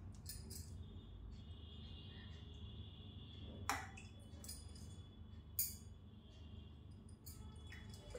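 Faint, quiet sounds of curry being ladled out of an aluminium pot, with two short light clinks of the spoon against the metal.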